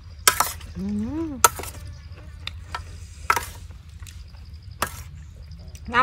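A metal spoon clinking and scraping against a metal tray of curry as food is scooped up, with about five sharp clinks spread over several seconds. There is a short hummed voice sound, rising then falling in pitch, about a second in.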